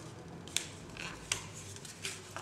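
A few light, sharp clicks of handling, two of them about three quarters of a second apart, with soft rustling between.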